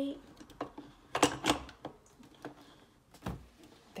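Portafilter of a Mr. Coffee steam espresso machine clicking and knocking against the brew head as it is seated and twisted to lock, with a loud cluster of clicks about a second in and a dull thump near the end.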